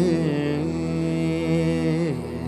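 A male singer's voice in a slow, wordless Carnatic-style passage, the melody gliding and wavering in pitch over a steady sustained drone.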